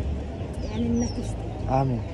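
A dove cooing low, with small birds giving a few short, high chirps that slide down in pitch.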